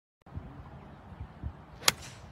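A golf club striking the ball in a full swing: one sharp crack near the end, ringing briefly, over a low background rumble.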